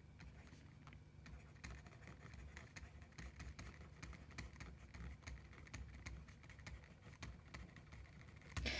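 Faint, irregular ticks and light scratching of a stylus writing on a tablet screen, over a low steady hum.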